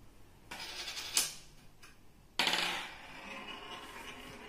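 A metal coin rolling across a wooden tabletop. A light rattle with a sharp click about a second in, then a louder rattle about halfway through that slowly dies away.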